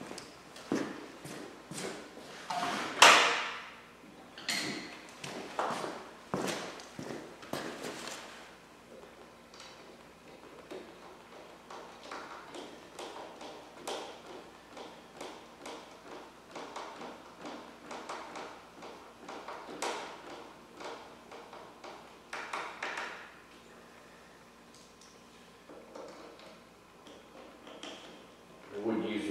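Plastic parts of a pressure washer's handle and gun holder knocking and clacking as they are fitted together, then a long run of small, fairly even clicks as Phillips screws are driven in by hand through the handle.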